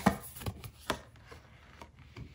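Tarot cards being handled and a card laid down on a table: several sharp taps and light slides of card, the loudest right at the start and another a little under a second in.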